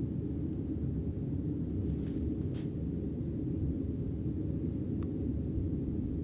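Steady low background hum, with two faint clicks about two seconds in and half a second apart.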